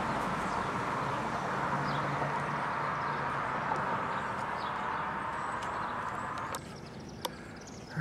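Steady rush of road traffic noise that drops away suddenly about six and a half seconds in, followed by a single faint click.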